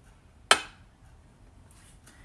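A metal teaspoon clinks once against a glass mixing bowl about half a second in, with a short ring after it.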